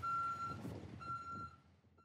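Garbage truck's reversing alarm: two steady, high-pitched beeps, each about half a second long and about a second apart.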